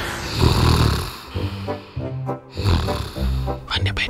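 A man snoring, one loud snore about half a second in, over background music with a steady low beat.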